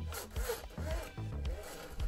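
3D-printed plastic slider pushed by hand along a 3D-printed slotted test track, scraping as it goes; its protruding screw heads rub on the platform. Background music plays underneath.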